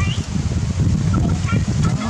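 Short, high chirping animal calls over a steady low rumble.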